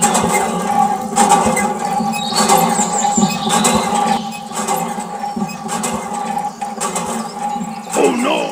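Squeaking from a miniature model hand pump as its handle is worked up and down by hand, with irregular clicks from the strokes.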